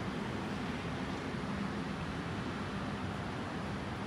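Steady outdoor background noise in a park: an even hiss with a faint low hum under it and no distinct events.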